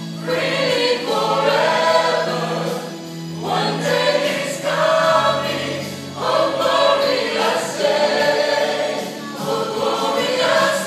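Church choir singing, the phrases swelling and then breaking off about every three seconds over a held low note.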